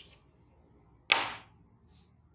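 Chalk striking and scraping on a blackboard during writing: one sharp stroke about a second in that fades within half a second, after the tail of another at the start.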